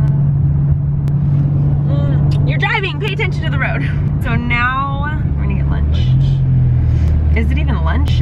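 Steady low engine and road drone inside a moving car's cabin, its low hum changing pitch about five seconds in, with people's voices over it.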